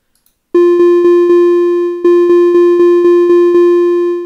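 Computer playback of a triplet rhythm exercise on a single repeated electronic pitch. Starting about half a second in, it plays three quick triplet notes and a longer note, then two more groups of three, then a longer note.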